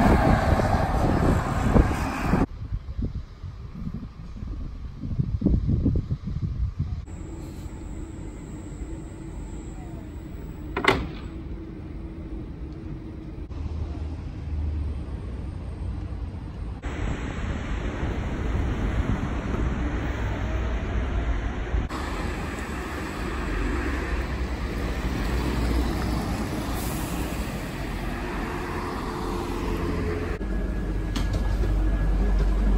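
Electric VDL Citea LLE-115 buses and other road traffic driving past, mostly tyre and road noise, in several short clips that change suddenly. The loudest passage is in the first two seconds, and there is a single sharp click about eleven seconds in.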